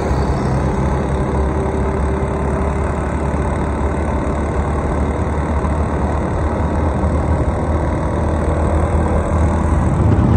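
Steady engine hum with road and wind noise from a vehicle driving along a road.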